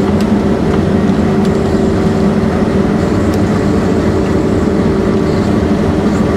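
New Holland combine harvester running steadily under load while cutting and threshing, heard from inside the cab: an even machine drone with a constant hum that does not change.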